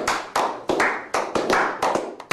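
A small group of people clapping their hands, a quick, uneven run of claps of about five a second.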